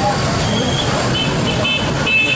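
Street noise of a crowd of marching students and motorbike and car traffic, with voices throughout. Short high-pitched toots sound about half a second in and several more times in the second half.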